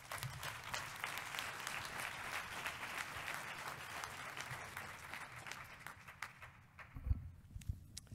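Audience applauding, dying away about six and a half seconds in. A few low thumps follow near the end as the podium microphone is handled.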